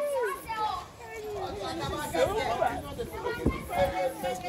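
Voices talking and calling out, overlapping, with a single short knock about three and a half seconds in.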